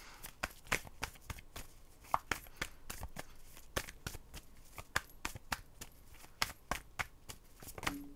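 Tarot cards being shuffled by hand: an irregular run of quick card clicks and snaps, several a second.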